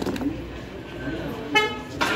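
A short knock at the start, then a vehicle horn sounds once, briefly, about a second and a half in.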